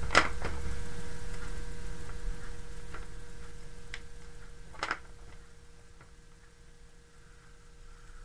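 Dry-erase marker and whiteboard handling: a few sharp clicks and taps, the loudest just after the start and another about five seconds in, over a faint steady hum.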